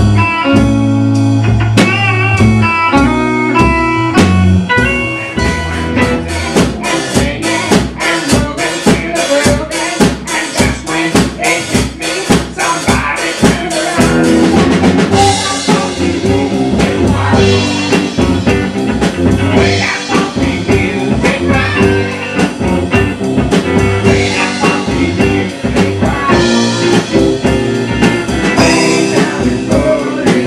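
A rock and country band playing an instrumental passage: picked guitar lines over a steady drum beat and bass. The band grows fuller from about halfway, with cymbals added.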